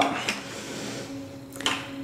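Faint steady hum with a single light click about one and a half seconds in, from hands handling the plastic bucket lid and bottles.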